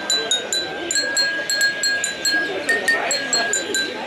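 Ceramic bowls struck with two thin sticks: a quick run of high ringing notes, several strikes a second, mostly on one pitch with a brief higher note about three seconds in.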